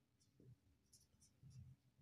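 Faint scratching of a felt-tip marker writing a word on paper, in several short strokes.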